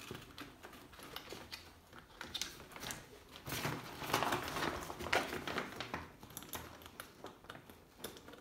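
Rustling and scraping of an Ortlieb seat pack's waterproof fabric and nylon straps being handled under a bicycle saddle, with scattered small clicks. The handling is busiest around the middle.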